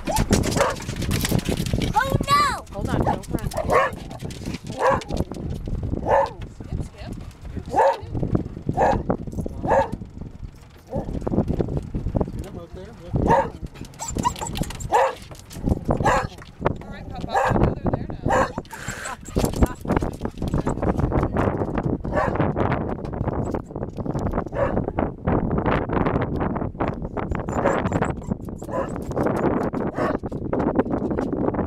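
Dogs barking repeatedly at the approaching dolphins, about one bark a second through the first half; a steady rushing noise fills the second half.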